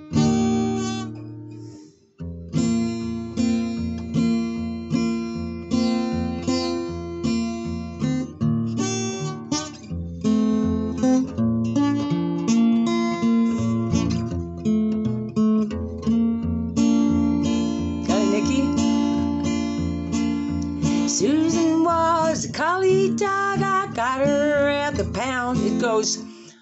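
Acoustic guitar strummed by hand, chord after chord in a steady rhythm, with a brief pause about two seconds in. Near the end a voice joins in over the strumming.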